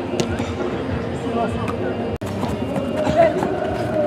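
Men's voices calling out on a five-a-side pitch, with music underneath. There is a brief sharp dropout a little over two seconds in.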